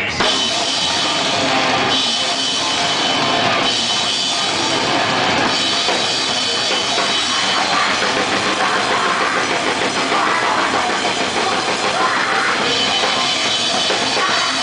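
Grindcore band playing live at full volume: pounding drum kit with crashing cymbals under heavy distorted guitars, a dense, unbroken wall of sound.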